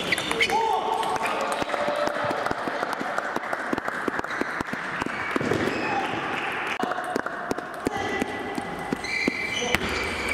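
Table tennis balls clicking irregularly off bats and tables, many from several tables in play at once, in a reverberant hall, with voices calling in the background.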